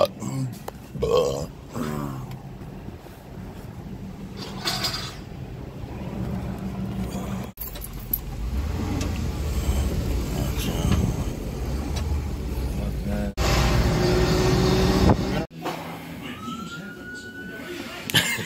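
Vehicle engine running with a steady low hum, split by abrupt cuts, with a few brief voices and a short high tone near the end.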